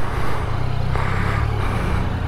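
Yamaha XSR900 motorcycle engine running at low revs while creeping through queued traffic: a steady low rumble.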